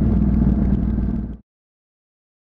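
Honda CTX700 parallel-twin motorcycle engine running steadily at road speed, with a rush of wind and road noise, cutting off abruptly to silence about one and a half seconds in.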